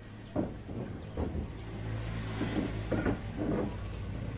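A motor vehicle's engine running with a steady low hum that slowly grows louder, with several short knocks or clinks over it.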